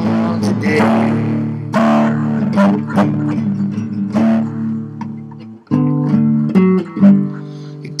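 Acoustic guitar strummed and picked in an instrumental passage between sung lines, chords ringing on. The playing drops out for a moment about five and a half seconds in, then resumes, and the singing voice comes back in at the very end.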